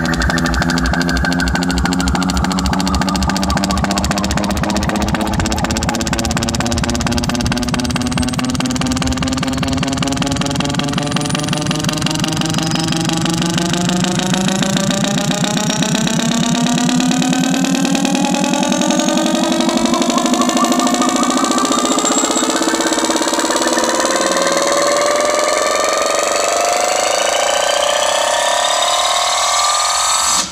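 Loud car audio system playing electronic music with long gliding synth tones, falling at first and rising through the second half, over a fast pulsing bass that fades out about halfway through.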